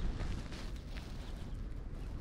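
Outdoor background noise: a steady low rumble with a faint hiss over it, and no distinct event.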